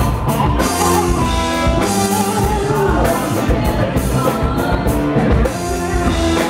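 Live rock band playing: electric guitars and drum kit with singing, loud and steady.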